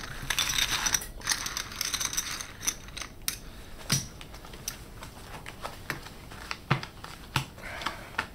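Clay poker chips clicking and clattering as hands push and gather them on a felt table: a busy run of clicks over the first three seconds, then scattered single clicks.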